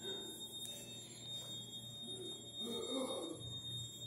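Quiet indoor room tone with a steady faint high-pitched whine and a low hum, and a faint, brief murmur of a distant voice about three seconds in.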